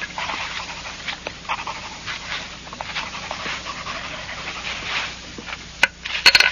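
A man's suppressed, breathy laughter: a rapid run of short gasping bursts of giggling, with a sharper, louder burst just before the end.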